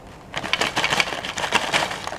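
Crispy salted egg peyek crackers poured from a snack bag onto a plate, clattering rapidly as the pieces slide out and land, starting about half a second in.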